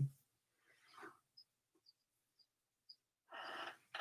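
Very quiet pause in a woman's talk: a faint breath about a second in, a few tiny high ticks, and a brief soft sound from her voice near the end.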